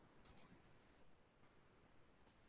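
Near silence with two quick clicks close together about a quarter second in, the kind made by a computer mouse or key near the microphone.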